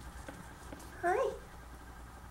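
Yorkshire terrier puppy giving one short whine about a second in, rising then falling in pitch.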